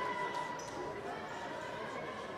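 Fencing-hall ambience: a steady tone fades out in the first second, over dull thuds of fencers' footwork on the piste and voices in the hall.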